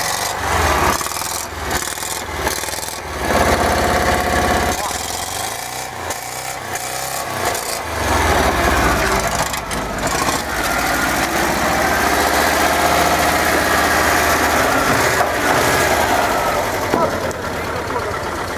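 LuAZ-969 off-roader's air-cooled V4 engine idling steadily just after being started. Scattered knocks and rubbing from handling come through in the first few seconds.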